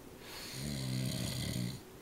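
A man snoring in his sleep: one long snore of about a second and a half, breathy at first, then with a low buzzing tone through its middle.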